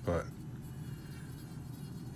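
Dremel Stylo+ rotary carving tool running steadily, a thin high buzzing whine as its burr grinds into the wood.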